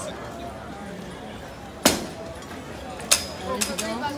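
Background chatter of an outdoor crowd, with two sharp knocks a little over a second apart, the first about halfway through.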